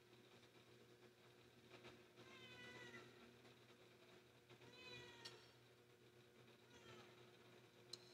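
A cat meowing faintly: three meows, each falling in pitch, about two seconds apart, the last one fainter. A sharp click comes near the end.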